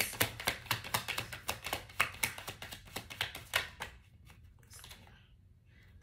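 A deck of tarot cards being shuffled by hand: a rapid run of crisp card snaps for about four seconds, then it stops and goes nearly quiet.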